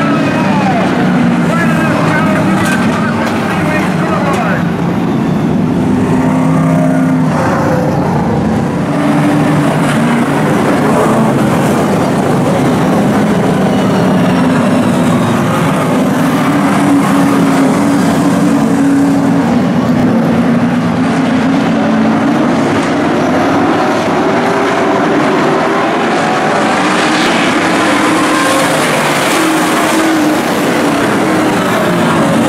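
A pack of late model stock car V8 engines running together at caution pace, several engines overlapping in a steady drone; near the end their pitch rises as the field picks up speed for the green-flag restart.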